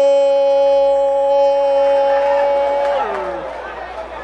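A male football commentator holding one long, loud drawn-out cry on a single high note for about three seconds as the penalty is struck. Near the end it slides down in pitch and fades.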